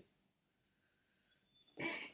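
Near silence, a pause in the talk, with a voice starting again near the end.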